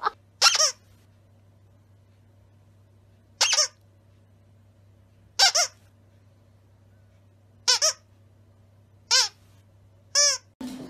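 Squeaky plush dog toy squeezed by hand, giving five short squeaks about two seconds apart, one of them a quick double. A faint steady low hum lies underneath.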